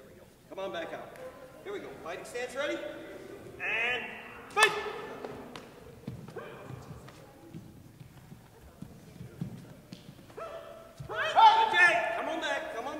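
Raised voices shouting and calling out during a martial-arts sparring bout in a large gym hall, in bursts, loudest near the end, with one sharp smack about four and a half seconds in.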